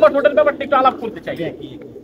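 Domestic pigeons cooing in rooftop loft cages, under a man's speech.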